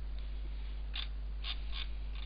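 Steady low electrical hum of the recording setup, with three faint short soft noises about a second in and shortly after.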